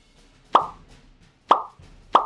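Two short cartoon pop sound effects, about a second apart, each a quick plop that dies away at once.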